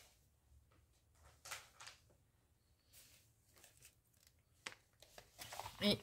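A few brief, faint rustles of glossy magazines being slid aside and set down on a wooden table, with a short tap near the end.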